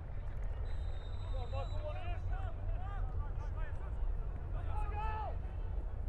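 Soccer players shouting and calling to each other out on the pitch, faint and scattered, over a steady low outdoor rumble.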